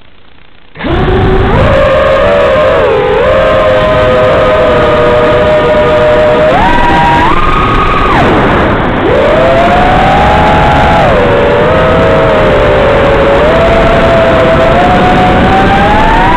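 A quadcopter's brushless motors start about a second in and then whine loudly through the onboard microphone with some distortion. Several close tones rise and fall together as the throttle changes, stepping up and down and swooping through a dip near the middle.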